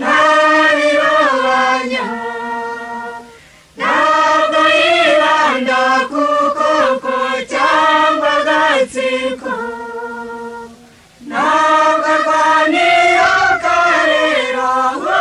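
Choir singing a Rwandan song in Kinyarwanda in long phrases. A held note fades into a short break about three and a half seconds in, and again about eleven seconds in, before the voices come back in.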